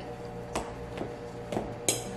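A fork and a spatula stirring shaggy bread dough in stainless steel mixing bowls, with a few light taps of utensil on metal bowl; the sharpest comes near the end.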